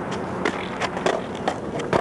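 Freestyle skateboard being ridden on flat pavement: wheels rolling with a quick string of sharp clacks, about five in two seconds, as the board hits the ground during flatland tricks.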